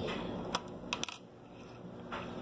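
Pennies clicking against one another and the wooden tabletop as they are handled: a few sharp clicks about half a second to a second in, then quiet.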